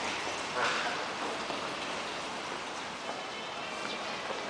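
Steady hissing background noise, with one brief louder sound a little over half a second in.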